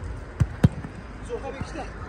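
A football being struck by a player's foot on artificial turf: two sharp thuds about a quarter of a second apart, the second louder, over the voices of spectators.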